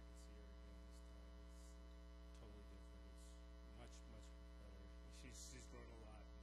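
Steady electrical mains hum throughout, low in level, with faint, indistinct talking underneath, mostly in the second half.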